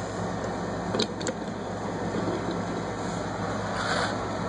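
Steady low background hum with faint room noise, broken by a couple of faint clicks about a second in and a brief soft rustle near the end.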